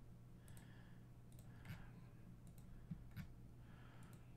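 Faint computer mouse clicks, about half a dozen spread irregularly over a few seconds, over a low steady hum.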